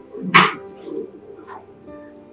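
A dog barks once, sharply, about a third of a second in, over steady background music.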